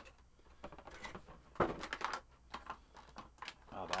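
Cardboard box and plastic packaging being handled as a figurine is unboxed: scattered light rustles and short clicks, with a sharper click about a third of the way in.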